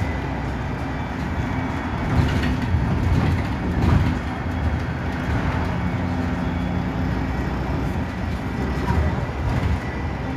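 Inside a moving Go-Ahead London single-deck bus (Metrobus WS121): its engine runs with a steady low hum and rumble, over a faint high whine. There are a few louder bumps about two, four and nine seconds in.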